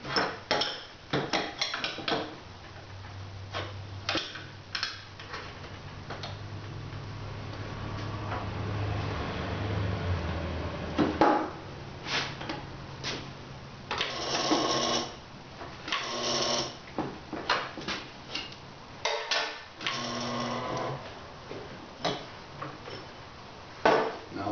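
Manual bench-top kart tire changer in use: the steel tire tool knocks and clanks against the machine and the wheel, and the rubber bead scrapes and rubs as it is levered up over the changer's nose to pull a tire off a five-inch go-kart wheel. A low steady hum runs under the first half.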